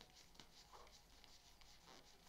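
Near silence, with a few faint soft rustles and clicks of tarot cards being handled and sorted through.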